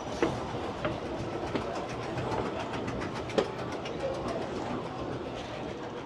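Escalator running with a steady mechanical clatter. A few sharp knocks come in the first second and one more about three and a half seconds in.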